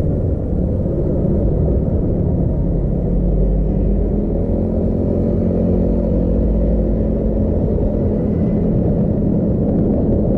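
Steady low rumble of road and engine noise from a slow-moving vehicle carrying the camera, picking up speed from walking pace to about 26 km/h, with a faint engine hum coming through from about three and a half seconds in.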